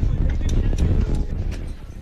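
Loud low rumbling with scattered rattling knocks, easing off near the end: a building shaking in a strong earthquake aftershock.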